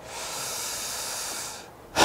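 A person's long, hissing breath close to a clip-on microphone, lasting about a second and a half and fading out near the end.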